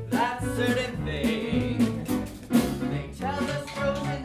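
A small live band, with piano and upright bass, plays a show tune for a dance section.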